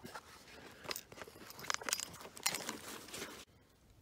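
Faint handling noises: scattered light clicks and rustling as a digital caliper is taken out and readied. These die away about three and a half seconds in.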